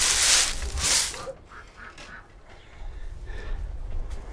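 Rustling swishes of a bundle of dry twigs being handled and bound into a broom, a few quick bursts in the first second, after which it falls much quieter.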